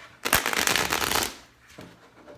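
A deck of tarot cards being shuffled: one dense burst of rapid card flicks, about a second long, starting a moment into the clip.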